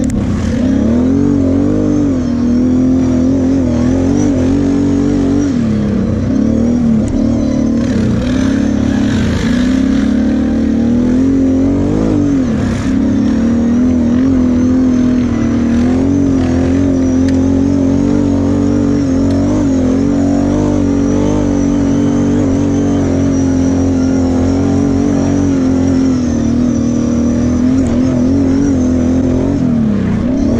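Kawasaki KFX 700 V-Force quad's V-twin engine, heard from the rider's seat, running hard over sand with the throttle opening and closing, its pitch wavering up and down.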